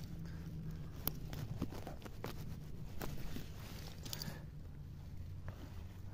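Dry pine needles and twigs crackling and rustling as a mushroom is dug and pulled out of the forest-floor litter, in a run of small irregular clicks and snaps.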